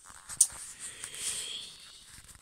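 Handling noise as the phone is swung round: a sharp click about half a second in, then rubbing and rustling against the mic that swells and fades.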